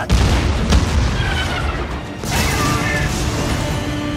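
Film soundtrack mix of heavy booms from a battleship's big guns firing and explosions, with orchestral score. A big boom comes right at the start and another about two seconds in, with held music tones after it.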